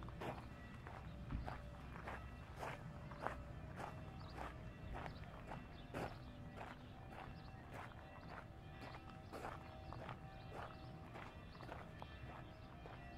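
Footsteps of a person walking at a steady pace, a little under two steps a second, on paved and gravel paths.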